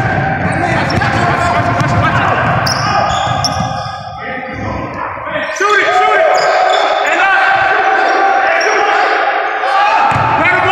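Basketball dribbled on a hardwood gym floor during a pickup game, with sneakers squeaking as players cut. Players' voices echo in the large hall.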